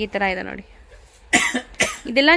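A person coughs twice in quick succession, two short sharp coughs about a second and a half in, after a few words of speech.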